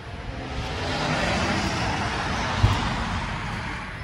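A vehicle passing on the road: a steady rush of tyre and engine noise that swells and then fades away. There is a single low thump about two and a half seconds in.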